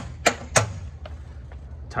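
A few sharp metallic clicks in quick succession in the first half second, from the latch of a metal trailer-tongue toolbox as its lid is opened.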